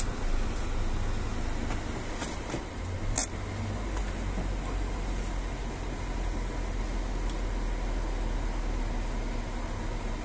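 Steady low rumble of a car's engine and cabin, heard from inside the car, with a single sharp click a few seconds in.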